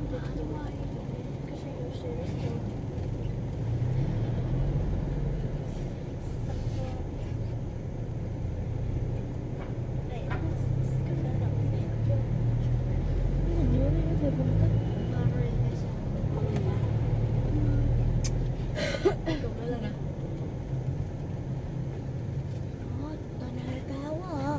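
Car cabin noise while driving slowly in city traffic: a steady low engine and road rumble, with one sharp click about three-quarters of the way through.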